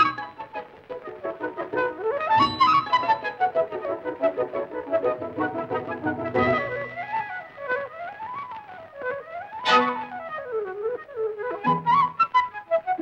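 Orchestral cartoon score with quick flute runs climbing and falling over brass. A sharp accent comes just before ten seconds in.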